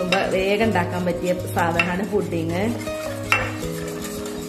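Wire whisk stirring a liquid mixture in a metal pot, clinking against the pot's side a few times, with background music playing throughout.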